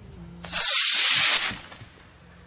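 Small rocket motor igniting and firing at launch: a sudden loud rushing hiss starting about half a second in, lasting about a second, then fading.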